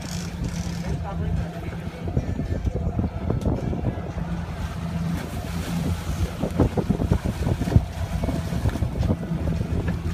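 A fishing boat's engine running with a steady low drone, with wind on the microphone. Irregular knocks and clatter run through most of it, starting about two seconds in.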